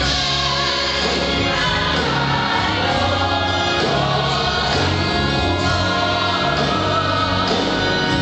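Gospel praise-and-worship singing by a group of singers on microphones, with instrumental accompaniment and sustained bass notes under the voices, continuous throughout.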